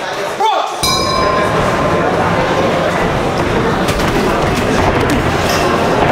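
Boxing ring bell struck once about a second in, its ringing dying away within about half a second, marking the start of the round. Steady noise of a crowd of voices in an indoor fight venue follows.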